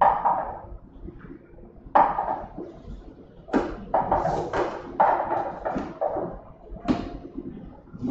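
Numbered plastic balls knocking and bouncing inside a small hand-turned clear lottery drum as it is spun for a draw, a string of sharp clattering knocks at irregular intervals, roughly one a second.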